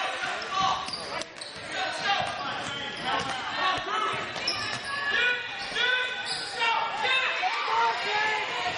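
Basketball bouncing on a hardwood gym floor during play, with shouts and voices from players and spectators echoing in the large hall.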